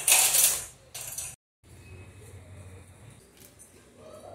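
Cutlery scraping and clinking against a dish to loosen stuck salt, loud for about the first second. After a brief break, only a quiet, steady low hum remains.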